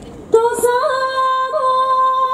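Yosakoi dance music starts suddenly: a woman's voice holds one long high note with small upward flicks of pitch. A couple of sharp knocks come near the end.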